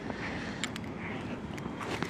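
Rubber curry brush rubbing over a Doberman's short, dense coat: a soft, steady scrubbing noise with a few faint clicks.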